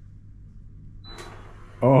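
A short, high electronic beep about a second in as a command from its remote reaches the Kohler smart toilet, then a man's loud exclamation near the end.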